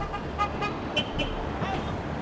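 Steady rumble of road traffic, with faint scattered voices in the background.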